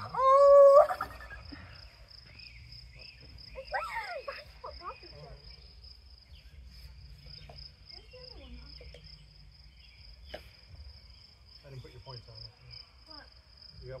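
Crickets chirping in a steady high-pitched trill, with a loud high-pitched shout in the first second and a few brief voice sounds.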